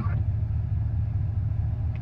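Steady low rumble of a car's engine idling, heard from inside the cabin.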